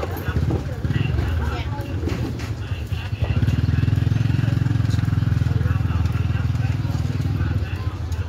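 A motorbike's small engine running close by, a loud steady low throb that starts about three seconds in and fades just before the end, over market chatter.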